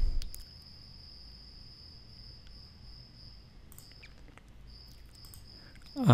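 Faint steady high-pitched whine that drops out for about a second near four seconds in, with a few soft clicks scattered through.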